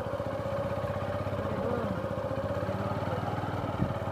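Motorcycle engine running steadily at low speed.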